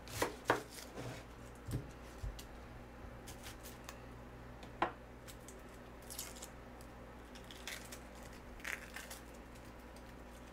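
Knife cutting through a raw onion onto a plastic cutting board: a few sharp cuts in the first two seconds and another sharp knock near the middle. Later come softer crackling rustles as the onion's papery skin is peeled off by hand.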